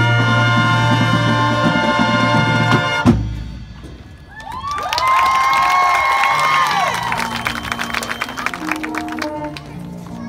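High school marching band with brass, percussion and front ensemble playing. A loud, full brass chord is held and then cut off with a sharp hit about three seconds in. After a brief lull, a softer passage follows, with high notes that slide up and down over quick light percussion ticks and a stepping low bass line.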